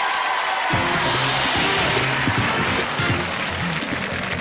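Music with a pitched bass line coming in under a steady rushing noise, starting a little under a second in.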